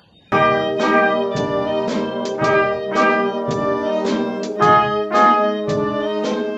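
A wind band of saxophones, trumpets, trombones, flutes, clarinets and French horns playing a tune. It comes in suddenly a moment after the start, with full chords changing about twice a second.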